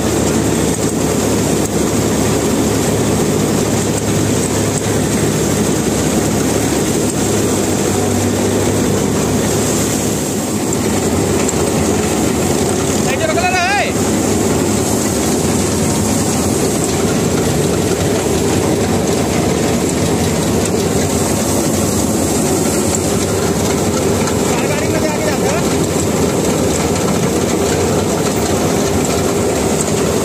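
Combine harvester running at work while its unloading auger discharges threshed grain into a tractor trolley: a loud, steady engine-and-machinery noise with grain pouring. A brief wavering call rises above it about 13 seconds in.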